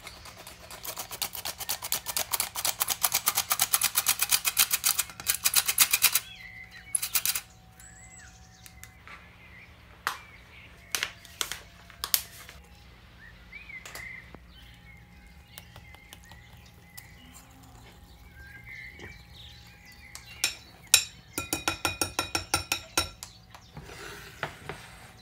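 Crank-operated flour sifter clicking rapidly and evenly for about five seconds as flour is sifted into a glass bowl. Scattered single taps follow, and near the end a whisk clinks quickly against the glass bowl while mixing the batter.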